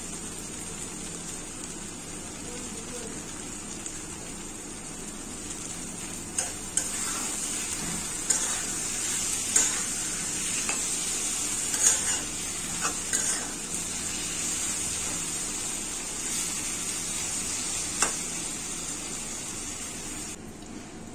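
Green beans frying in a stone-coated wok, a steady sizzle throughout. From about six seconds in, a metal spatula scrapes and taps against the pan as the beans are stirred.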